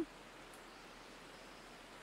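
Faint steady background hiss, with no distinct sounds.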